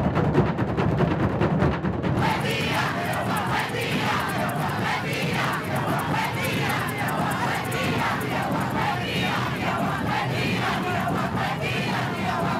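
Hand drums beaten in a fast, dense rhythm. From about two seconds in, a large crowd shouts and sings together over the drumming.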